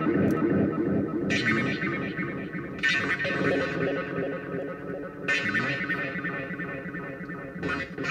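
Distorted, echoing electronic drone from a circuit-bent telephone's effects chain (voice changer into a spring reverb and a PT2399 delay), its repeats piling up as the knobs are worked. Brighter, hissier bursts break in every second or two, and one pitch bends upward about five and a half seconds in.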